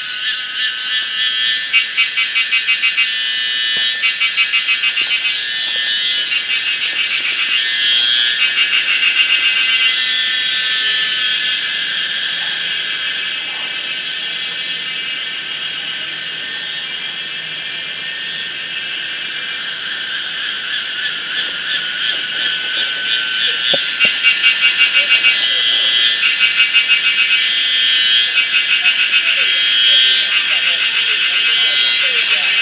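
Chorus of cicadas in woodland: a loud, high-pitched shrill buzz that swells and fades, with fast pulsing phrases near the start and again in the last several seconds.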